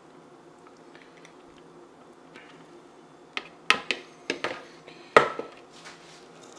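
Faint room hum, then from about three and a half seconds in a handful of short, sharp knocks and clatters of plastic mixing bowls and utensils being set down and handled on a kitchen counter. The loudest knock comes near the end.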